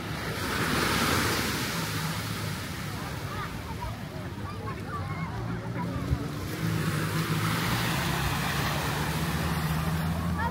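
Small surf washing up onto a sandy beach, swelling about a second in and again near the end, over a low steady hum.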